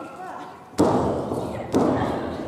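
Two sharp thuds about a second apart as professional wrestlers grapple in the ring, each followed by a short ringing echo in the hall.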